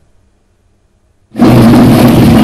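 A second or so of silence, then loud drumming and other percussion start abruptly.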